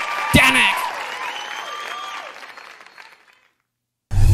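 Studio audience applauding, with voices mixed in, fading out to silence about three and a half seconds in.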